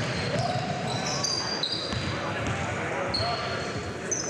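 Live basketball game sounds: sneakers squeaking on the hardwood court in short high chirps, a basketball bouncing, and players' voices in the gym.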